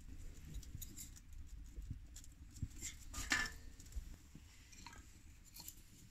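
Wood fire burning in a small stove: faint, irregular crackles and pops, the sharpest about three seconds in.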